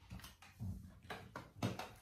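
A handful of light knocks and taps, about seven in two seconds and irregularly spaced, some with a dull thud: handling and movement noise from people shifting about at a table.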